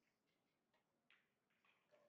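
Near silence: quiet room tone with a few faint clicks, about a second in and again near the end.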